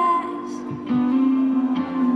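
Live band playing: a female singer's held note ends just after the start, then electric guitar, bass and keyboard carry on with sustained notes from about a second in.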